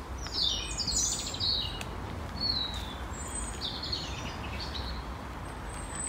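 A songbird singing three short phrases, each a run of quick falling notes, over a steady low background rumble.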